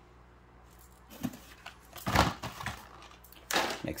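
Handling noises from carded die-cast toy cars in plastic blister packs being moved about: a few short knocks and rustles, the loudest about two seconds in and another just before the end.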